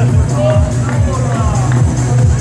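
Techno played loud over a sound system, with a steady four-on-the-floor kick drum about two beats a second under a bass line. Crowd voices talk over the music.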